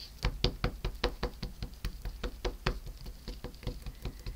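VersaMark ink pad tapped over and over onto a rubber background stamp, a quick run of light taps at about six a second as the stamp is inked.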